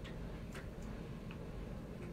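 A few light clicks, about four spread over two seconds, over a steady low hum.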